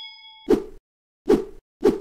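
Sound effects of a subscribe-button animation: a bell-like ding fades out in the first half second, then three short pops come about 0.6 to 0.8 s apart.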